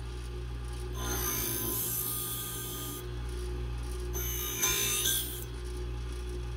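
New Tech electric scissor-sharpening machine grinding a scissor blade against its wheel, over a steady motor hum. There are two passes of high, hissing grinding, the first about a second in lasting some two seconds, the second around four seconds in and shorter.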